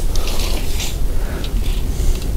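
Steel tape measure blade being drawn out of its case along the rough bark of a log, an irregular scratchy rattle, over a steady low rumble.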